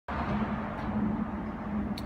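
A steady low mechanical hum with a constant low tone over a rumble.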